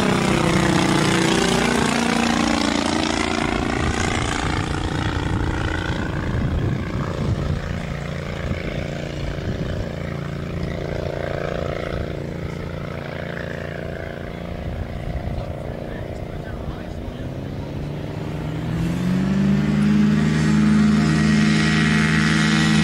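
Legal Eagle ultralight's four-stroke Generac V-twin engine on a low pass: its note drops in pitch as the plane goes by and fades into the distance. Near the end the engine grows louder and rises in pitch again as the plane comes back close.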